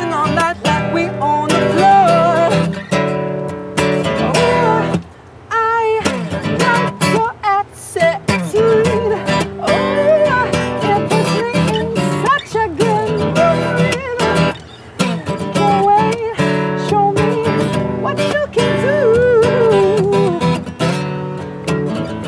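Acoustic pop song played live: a strummed acoustic guitar with a singing voice gliding over it, the music dipping briefly about five seconds in.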